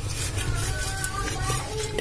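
Faint voice-like sound in the background, quieter than the nearby narration, with a steady low hum underneath.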